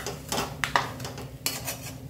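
Metal spatula scraping and clanking against a metal kadhai while stirring a dry, besan-coated capsicum dish, about half a dozen strokes.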